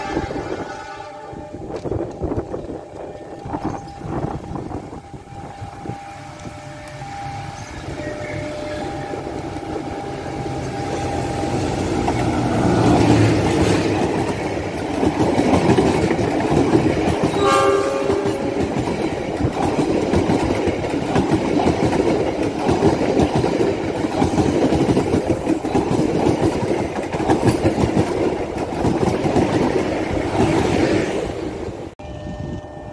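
A passenger train of stainless-steel coaches approaches and passes close by at speed. It grows steadily louder into a dense rumble with wheels clattering over the rail joints. The horn sounds at the start and briefly again about halfway through the pass.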